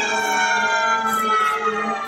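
A loud, sustained siren-like wail made of several pitches at once, sliding slowly downward in pitch.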